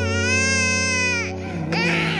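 An infant crying: one long wail that rises and falls in pitch, then a shorter cry near the end, over soft background music with sustained chords.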